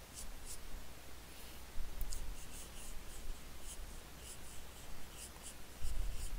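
HB graphite pencil strokes scratching on drawing paper while shading: short, quick strokes in irregular runs with brief pauses between them.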